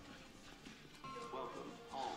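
Faint TV drama soundtrack: quiet music, with a brief voice in the second half.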